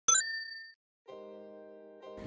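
A quick rising run of bright chime tones, an intro sound effect, rings out and fades over about half a second. About a second in, a soft held chord begins: the opening of background music.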